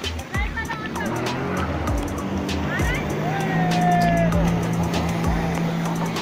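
Jet ski engine running at speed as the watercraft approaches, a steady drone, with people calling out and scattered sharp clicks.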